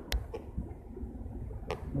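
Low rumble of movement and handling with two sharp clicks, one just after the start and one near the end, as a person climbs out of the driver's seat of a Nissan Armada SUV.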